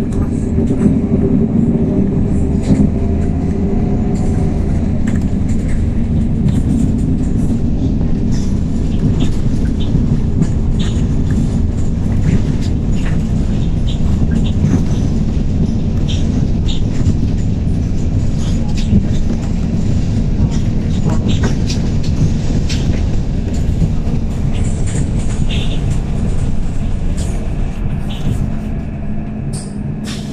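Inside a 2019 MAN 18.310 compressed-natural-gas city bus under way: a steady low drone of engine and road, with frequent rattles and clicks from the body and fittings. A faint rising whine comes in a few seconds in.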